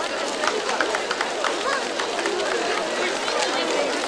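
Chatter of a large outdoor crowd of children and adults, many voices overlapping at a steady level.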